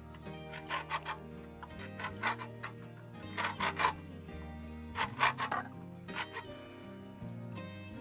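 Lemon rind being rasped on a stainless steel box grater, in short runs of quick scraping strokes, to take off the zest. Steady background music plays underneath.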